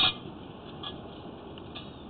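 A single sharp click, then a steady low hiss with two faint ticks, about a second apart.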